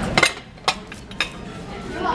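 A few sharp clinks of dishes and cutlery on a restaurant table, two close together at the start and two more within the next second, over faint background music.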